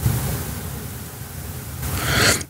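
Steady hiss of the recording's background noise with a low hum beneath it, easing slightly, then a short intake of breath near the end.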